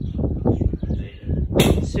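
A flock of pigeons suddenly taking flight: a short, loud rush of wingbeats about one and a half seconds in.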